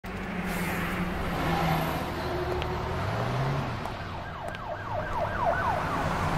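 A steady noisy background with faint low tones. About two-thirds of the way in, a wailing tone starts, sweeping rapidly up and down about three to four times a second like a yelp siren.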